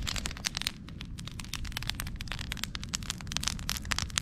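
Campfire of burning sticks crackling, with many sharp, irregular pops over a low steady rumble.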